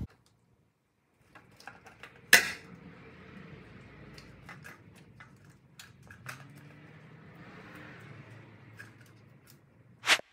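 Light handling noise of plastic car parts being fitted at the front of a vehicle: scattered small clicks and knocks over a quiet room background, with one sharper click about two and a half seconds in.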